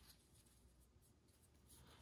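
Near silence, with only a faint rustle of tarot cards being shuffled by hand.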